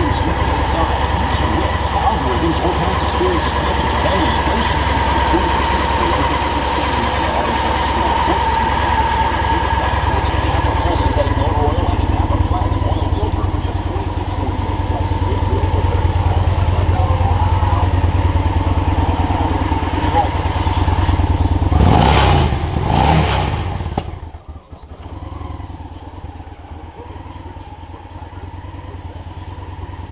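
Victory Vision Tour's V-twin engine idling steadily. Near the end it gives a brief louder burst, then stops about 24 seconds in, leaving a quieter background.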